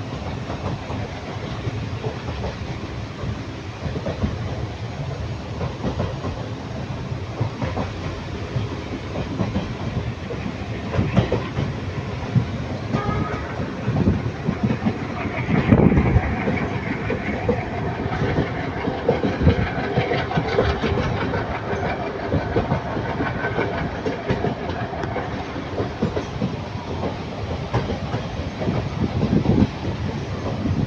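Train running along the track, with the continuous rumble and clickety-clack of wheels over rail joints. There is one louder knock about sixteen seconds in.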